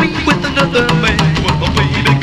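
Rockabilly band playing an instrumental passage: a steady drum beat with bass and electric guitar, no vocals.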